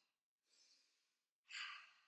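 A woman breathing out audibly: a faint breath about half a second in, then a louder, short exhale about a second and a half in.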